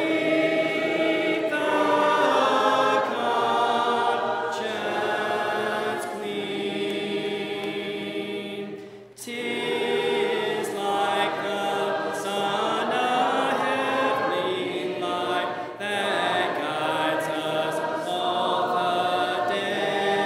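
A choir singing a hymn a cappella in several voice parts, in sustained phrases. There is a brief break between phrases about nine seconds in.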